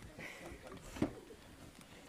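Low bustle of children settling onto the floor: faint shuffling and murmuring, with a single sharp knock about a second in.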